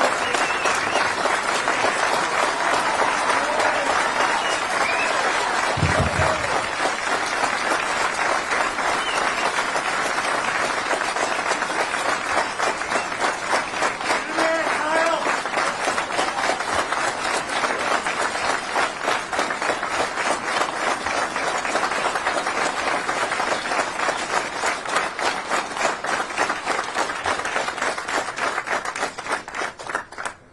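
A crowd applauding steadily, with a few cheers and shouts mixed in, after a speech. There is a brief low thud about six seconds in, and the clapping dies away near the end.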